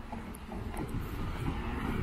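A minivan approaching and passing along the road, its tyre and engine noise growing louder as it nears.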